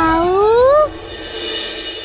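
A young boy's cry of pain, dipping then rising in pitch and ending just under a second in, over dramatic background music that then turns quieter.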